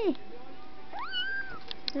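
Young kitten meowing: the tail of one call at the start, then one high-pitched meow that rises and holds about a second in. A short click near the end.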